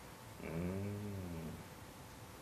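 A man's single drawn-out 'oh' (Thai 'อ๋อ'), an acknowledging interjection in a low voice that rises then falls in pitch, starting about half a second in and lasting about a second.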